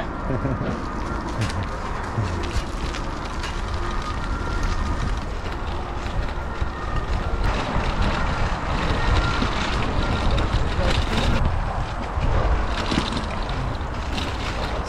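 Wind blowing across the microphone of a camera mounted on a moving bicycle, with the bicycle's tyres rumbling and bumping over the path.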